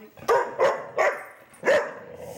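Labrador retriever barking four short, loud barks at a can of compressed air it is wary of, the last after a short pause.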